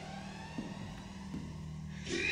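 A quiet stretch of a hip-hop track: a held low bass note with faint high synth tones above it, and two soft taps.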